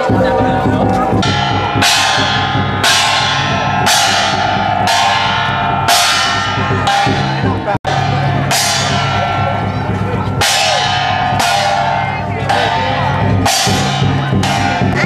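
Chinese lion-dance percussion: a large drum beating steadily under cymbal crashes that come about once a second, each ringing on before the next. The sound drops out for an instant near the middle.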